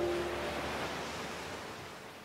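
Waves washing onto a beach, fading out steadily, with the last held chord of the music dying away at the start.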